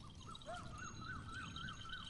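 Faint bird call: a string of short rising-and-falling notes, about four a second, over quiet open-field ambience.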